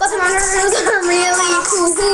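A young girl singing a song, the voice gliding and holding notes, with music.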